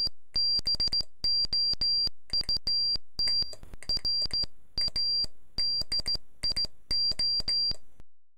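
Morse code sent on a brass straight key: a single high-pitched beep keyed on and off in dots and dashes, each element starting and stopping with a sharp click, ending shortly before the end.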